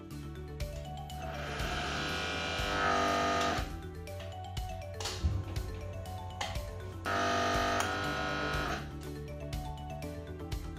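Busbar punching machine run twice, each stroke about two seconds of motor and pump noise with a tone rising near the end as the punch goes through the bar, the second starting abruptly about seven seconds in. Background music plays throughout.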